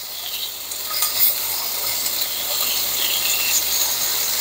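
Chicken thigh pieces sizzling in hot canola oil in a nonstick frying pan on medium-high heat as more pieces are laid in. It is a steady crackling hiss that grows louder about a second in.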